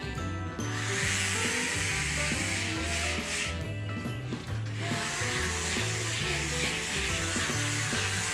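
Dremel rotary nail grinder sanding down a Bernese mountain dog's nails: a rasping hiss in two stretches, with a short break about three and a half seconds in. Background music with a steady bass line plays throughout.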